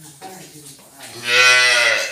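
A single loud moo from cattle, starting about a second in and lasting about a second, its pitch rising slightly and then falling.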